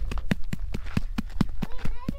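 A hot, ash-crusted campfire damper tossed and patted quickly from hand to hand because it is too hot to hold: a fast, even run of soft thuds, about six a second.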